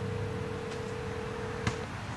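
Phone ringback tone played through a smartphone's speaker: one steady tone lasting about two seconds, the signal that an outgoing call is ringing at the other end. A brief click comes near the end.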